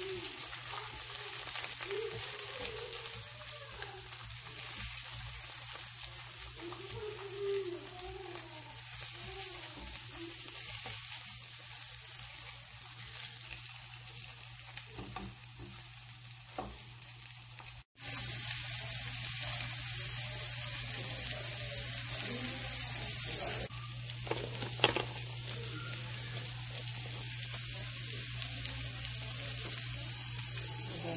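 Hot dogs sizzling in oil in a nonstick frying pan, with a spatula pushing them around the pan. The sizzle breaks off briefly a little past halfway and comes back louder, and a single sharp tap sounds a few seconds later.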